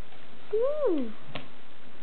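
A toddler's short meow-like vocal sound, rising then falling in pitch over about half a second. A single light tap follows just after.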